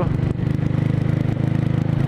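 Motorcycle engine running steadily while riding, with a rapid even pulse.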